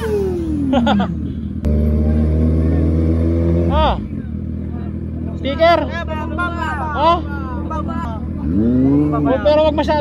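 Kawasaki ZX-6R sport bike's inline-four engine, its pitch falling over the first second, then running at a steady note for about two seconds. A group of young people's voices takes over in the second half.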